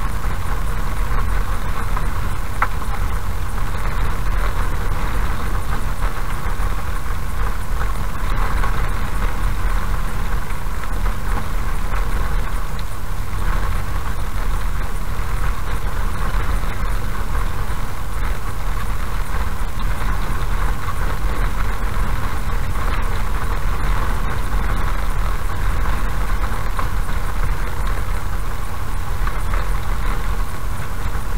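Steady engine and tyre noise of a car driving slowly on an unpaved dirt road, heard from inside the cabin, with a few faint ticks.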